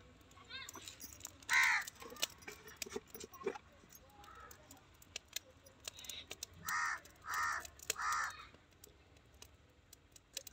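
Crow cawing outdoors: one call about a second and a half in, then three caws in quick succession near the end, with small clicks and crackles between.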